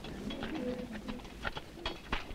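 A dove cooing in low, wavering notes, with a few sharp clicks near the end.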